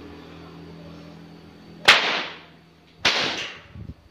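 Two loud cracks of a 2.5-metre pecut bopo, a Ponorogo cemeti whip, about a second apart, the first the louder, each ringing out briefly.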